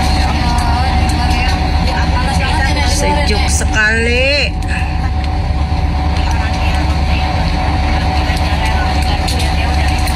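Steady low rumble of a vehicle driving, heard from inside its cabin, with faint voices in the background between about one and four and a half seconds in.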